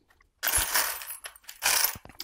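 Loose small metal screws rattling and clinking in a clear plastic parts bin as it is handled and hands dig through it, in two bursts.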